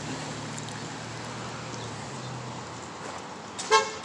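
Steady low hum of street traffic, then a single short vehicle horn toot near the end.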